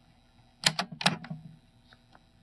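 Transport keys of an Aiwa CS-P500 mini boombox's cassette deck clicking as they are pressed: a few sharp mechanical clicks about a second in.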